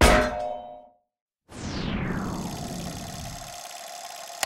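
Logo-sting sound effects: a sharp metallic clang that rings out and dies within a second, a short silence, then a swoosh falling in pitch over a low rumble and a steady ringing tone that slowly fade.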